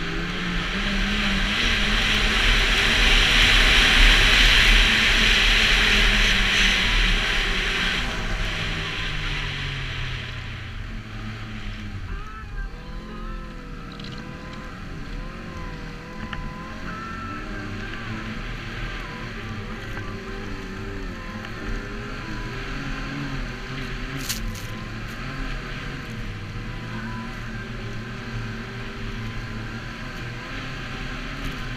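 Snowmobile engine running under throttle with loud rushing noise. The pitch climbs briefly, then falls slowly over about ten seconds as it eases off, and settles to a lower, steadier run.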